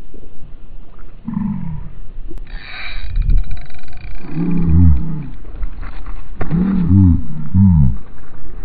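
A man's drawn-out, wordless excited groans: four long, low cries that rise and fall in pitch, the loudest near the middle and the end.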